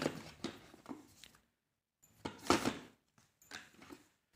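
Rustling and scraping of a smartphone and its cardboard box being handled as the phone is lifted out, in short bursts with a louder rustle a little past halfway.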